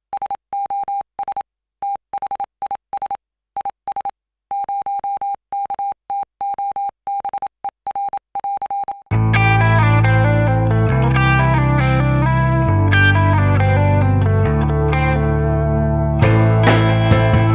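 Morse code: a single steady beep tone keyed on and off in short and long elements for about nine seconds. Then loud intro music with a low bass line cuts in suddenly.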